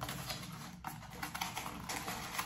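Faint light clicks and scrapes of fingers handling and opening a small razor box.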